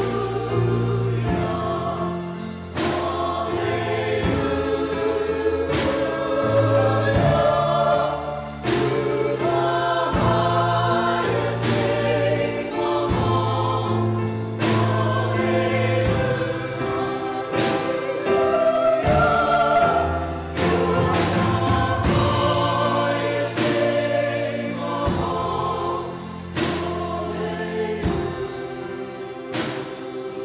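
Mixed church choir of men and women singing a Christmas song in parts, accompanied by piano and keyboard with a steady beat and held bass notes.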